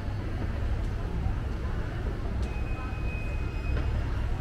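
Escalator running with a steady low rumble, under the general murmur of a busy shopping mall; a faint, thin high tone comes in about halfway.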